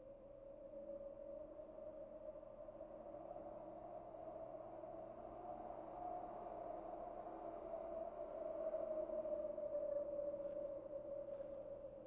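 A steady, sustained musical drone, like a synthesizer pad, holding one low-middle pitch and slowly swelling to its loudest about ten seconds in. Faint, short high ticks join it near the end.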